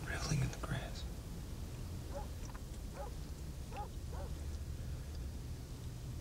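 A faint whispered voice, a few soft syllables in the middle stretch, over a low steady hum.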